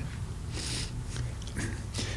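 Low steady hum with a soft breath about halfway through, between spoken phrases.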